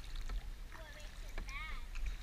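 Kayak paddles dipping into the water with light splashes and drips, over a steady low rumble. A high child's voice asks a short question near the end.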